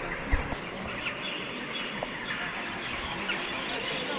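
Steady background murmur of a crowd with short bird chirps over it, and one brief low thump just after it begins.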